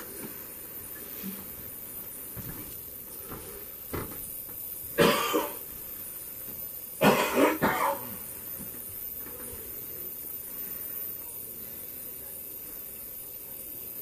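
A person coughing: one cough about five seconds in, then a short run of coughs around seven seconds.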